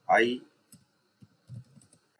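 Typing on a computer keyboard: a few faint, separate keystrokes following a spoken "I".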